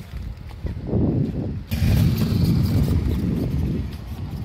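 A motorcycle running close by as it rides off along a dirt track, mixed with a rumbling noise.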